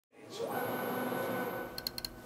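A printer running steadily with a thin high whine, then a few quick clicks near the end.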